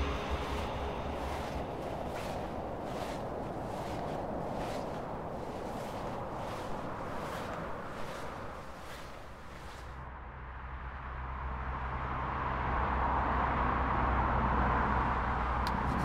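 Regular soft footsteps crunching in snow over a faint outdoor hiss, fading out about ten seconds in. A steady low vehicle engine rumble then grows louder through the rest.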